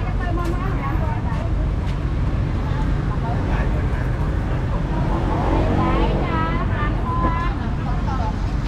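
Street market ambience: people talking nearby over a steady low rumble of road traffic, with voices loudest about six to seven seconds in.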